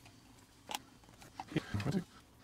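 Handling noise from a small plastic Bluetooth speaker being reassembled with a screwdriver: one sharp click about three-quarters of a second in and a few faint ticks after it. Near the end comes a brief low murmur from a man's voice.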